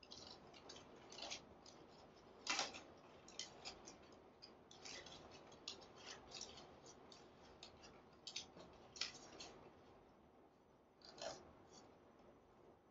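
Faint, scattered crackling and rustling of dried, silver-painted monstera leaves being handled and pressed into place in the arrangement, with a sharper crackle about two and a half seconds in and another near the end.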